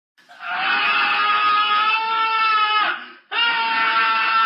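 A voice crying out loudly in long held wails: the first falls in pitch and breaks off about three seconds in, and a second wail starts straight after.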